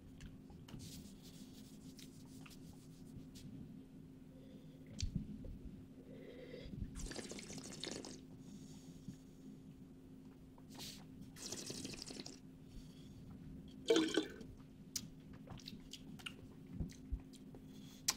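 Faint wet mouth sounds of a taster working red wine over the palate, with two longer breathy slurps about seven and eleven seconds in and a few small clicks, over a steady low hum.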